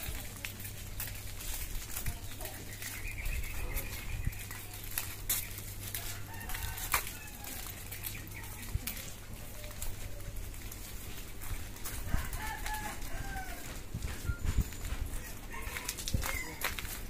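Rooster crowing several times, each crow a drawn-out call that rises and falls, with footsteps and a low steady hum underneath.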